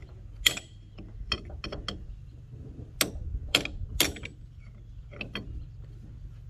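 Ratchet wrench clicking in short, irregular runs with metal-on-metal clinks as a nut on an excavator hydraulic pump's drive-gear shaft is worked. A low steady hum runs underneath.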